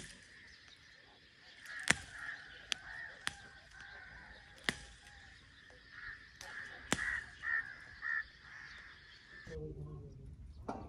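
Sharp snaps and rustling of a flowering desert shrub's twigs as its flowers are plucked by hand, about five distinct snaps spread through the clip. Birds call in the background throughout, with two louder calls near the end.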